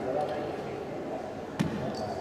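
A thrown leather boccia ball landing on the wooden sports-hall floor, a single sharp knock about one and a half seconds in, over a murmur of voices in the hall.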